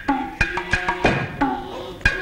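Kabuki nagauta ensemble music: sharp plucked shamisen notes about three a second over strikes of tsuzumi hand drums.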